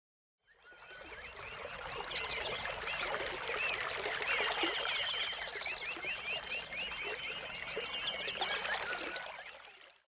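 A chorus of chirping birds over a steady trickle of running water. It fades in about half a second in and fades out near the end.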